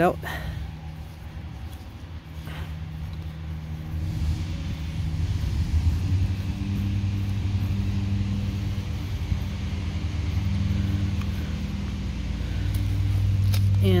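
A steady low engine hum, as from a nearby motor vehicle, growing louder about four seconds in and holding on.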